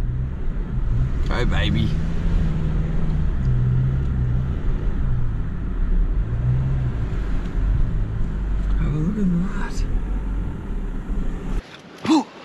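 Car driving, heard from inside the cabin: a steady low rumble of engine and tyres that cuts off abruptly near the end.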